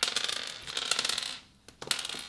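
Clear slime packed with hard plastic gems being pressed and squeezed by hand, the gems clicking and clattering against each other: a dense run of clicks for about a second and a half, then a few single clicks near the end.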